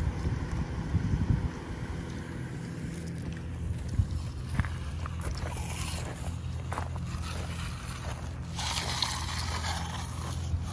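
A motor running steadily with a low, even hum, with a few light knocks and scrapes about four to seven seconds in and a brighter hiss near the end.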